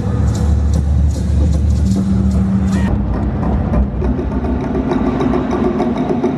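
Live stage-show soundtrack played through an arena's sound system: a deep steady rumble and a held low drone with sharp percussive clicks, shifting to a different texture about halfway through.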